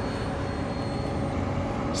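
A steady low rumble and hiss, with a faint high-pitched whine that stops about a second and a half in. The motorcycle's ignition is on, but its engine has not yet started.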